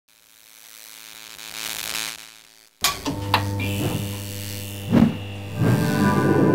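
Intro logo sting: a swell that rises and fades over the first two seconds, then breaks off. About three seconds in, electronic music starts suddenly, with sustained tones and a few sharp hits.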